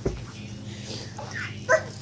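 A sharp thump, then about a second and a half in a short, high-pitched baby squeal that rises in pitch.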